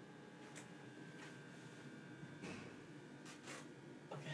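Near silence: a faint steady hum of room tone, with a few soft clicks.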